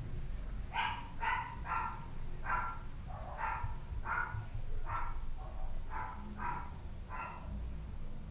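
A dog barking repeatedly, about a dozen short barks at roughly two a second, over a low steady background rumble.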